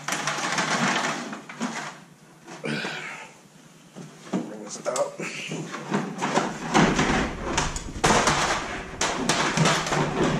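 Aluminium ladder clanking and scraping against wooden rafters as it is pushed up and slid into place overhead. An irregular run of knocks and rattles that gets busier near the end.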